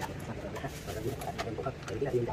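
Scattered light clicks and knocks from the seat post of a folding electric scooter being handled and adjusted by hand. Irregular cooing calls sound in the background.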